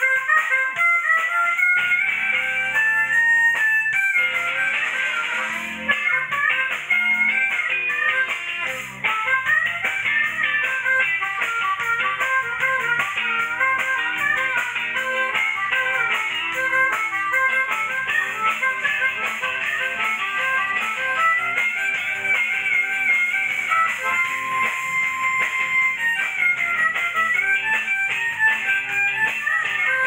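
Live band playing an instrumental break, with an electric guitar to the fore and a dense run of quick lead notes. A single note is held briefly about three-quarters of the way through.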